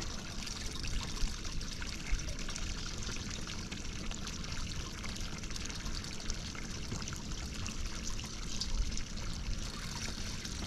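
Water lapping and trickling against the hull of a small boat, a steady splashy wash with a low rumble underneath.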